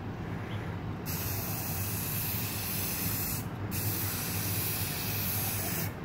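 Aerosol spray can of gloss clear coat hissing in two long passes, starting about a second in, with a brief break in the middle where the nozzle is let go at the end of a pass.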